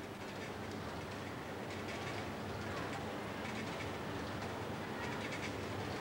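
Factory electric bell ringing continuously through a large hall, the signal for the lunch break, with a rattling, echoing ring that builds slightly in level.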